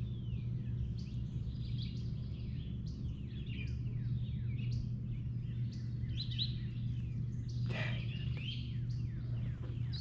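Wild songbirds chirping and singing, many short falling chirps overlapping one another, over a steady low hum.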